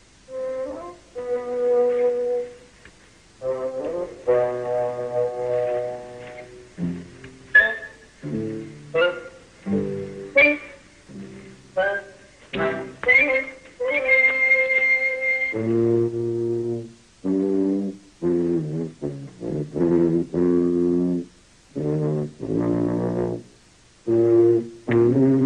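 A brass horn playing a slow, halting tune of separate held notes, moving to lower notes in the last third.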